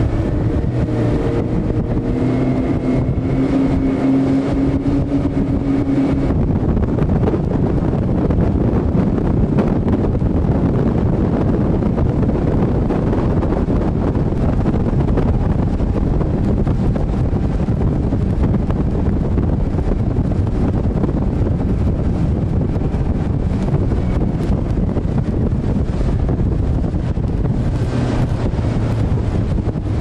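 Wind buffeting the microphone over a motorboat engine running on the water. The engine's steady hum stands out for about the first six seconds, then sinks into the wind noise.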